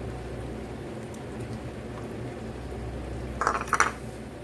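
A utensil stirring thick cream sauce in a metal frying pan, with soft wet sounds, then a quick cluster of knocks and scrapes against the pan near the end. A steady low hum runs underneath.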